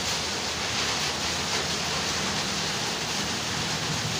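Steady rain, an even hiss with no breaks.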